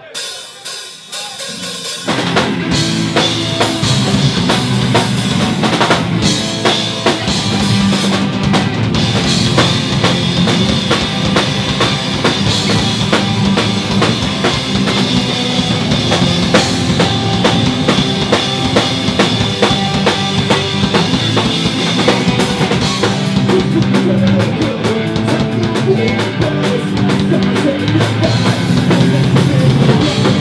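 Rock band playing live on electric guitars, bass guitar and drum kit, the full band coming in loud about two seconds in after a quieter opening.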